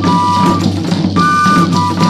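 Terno de Reis folk music from Bahia: a high melody moves in short held notes that step up and down, over steady drumming and percussion.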